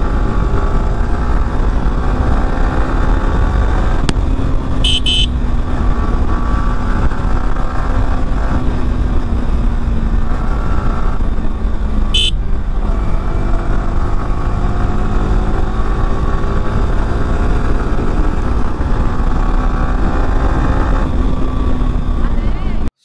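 Yamaha R15 V4's single-cylinder engine running at a steady cruising speed, heard from the rider's seat under heavy wind rumble on the microphone. Two short high-pitched toots sound, about five and about twelve seconds in.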